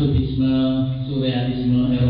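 A man's voice speaking slowly, with long, level drawn-out vowels.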